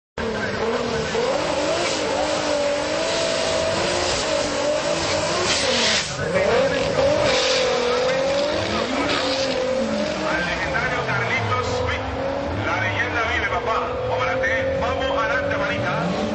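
Turbocharged VR6 engine of a Mk4 VW Jetta GLI revving at the drag strip line, then launching and accelerating hard down the strip, its pitch rising and falling through the run, with people talking in the background.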